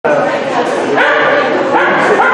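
A dog barking over people talking.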